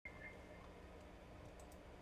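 Near silence: a low steady room hum with a couple of faint clicks about three-quarters of the way through.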